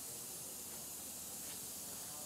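Faint steady hiss of background room tone, with no distinct event.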